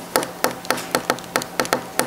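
A quick, uneven series of about nine sharp taps or knocks over two seconds.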